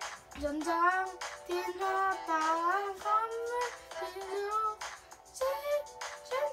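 A child's voice chanting Chinese vocabulary words one after another in a steady rhythm, over backing music with a beat.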